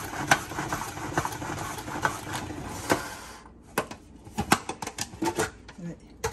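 Pump-action plastic salad spinner whirring with rapid clicking as its knob is pumped and the basket spins water off washed greens. The whir dies away about three and a half seconds in, followed by a few sharp plastic clicks and knocks as the lid is taken off.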